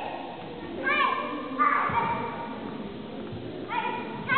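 Children's short, high-pitched kiai shouts from karate students sparring, a few in quick succession, echoing in a gymnasium hall.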